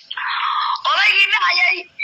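Speech: a man talking, opening with a short hiss before his voice comes in.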